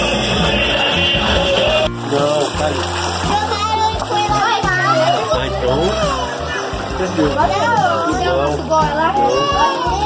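Loud music until a sudden change about two seconds in. After that come children shouting and splashing in an above-ground backyard pool, with music still playing underneath.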